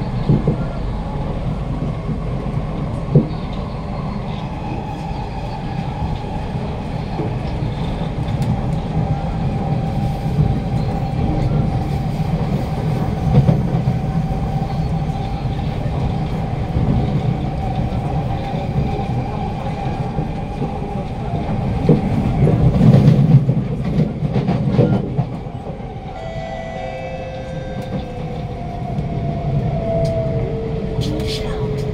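Passenger-cab interior of a Kawasaki–CRRC Sifang C151A metro train running at speed: steady wheel-on-rail rumble with a motor whine, a few sharp clicks and a louder stretch over several seconds past the middle. Near the end two whine tones fall in pitch as the train slows.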